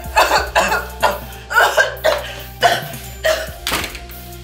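A woman's strained, choking cries and coughs in a run of short bursts, as she is held by the throat, over steady background music.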